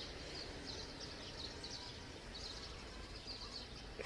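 Faint, scattered high chirps of small birds, repeating irregularly over a low, steady outdoor background hum.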